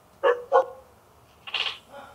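A pet dog barking twice in quick succession, heard over a video-call audio line, followed by a brief higher-pitched sound about a second later.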